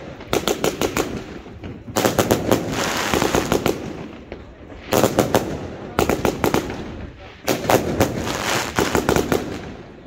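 The Treasure Hunter firework firing shot after shot into bursts overhead. Each group of loud pops comes in a quick rapid run, with short gaps between the groups.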